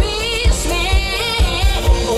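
A woman singing with a live band, over a steady drum beat of about two beats a second.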